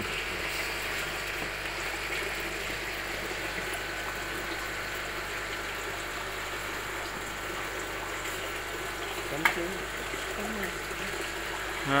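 Water running steadily out of a pipe outlet and splashing into a fish tank below, a continuous even stream. A single sharp click sounds about nine and a half seconds in.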